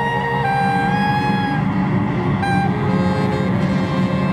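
Ensemble music: a held wind-instrument note that steps slightly lower about half a second in, over a dense low sustained string layer.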